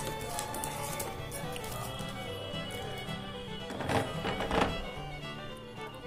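Background music with steady held tones, and a couple of short knocks about four seconds in as a paper calendar is handled onto its wooden easel stand.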